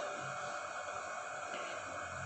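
Faint steady hiss from a hot, empty iron tawa on the stove, its oiled surface left bare between parathas.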